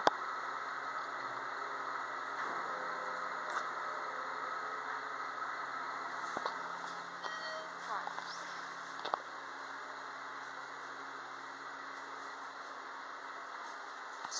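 ThyssenKrupp hydraulic elevator running during a ride: a steady machinery hum that drops away about nine seconds in. A short chime sounds a little past the middle.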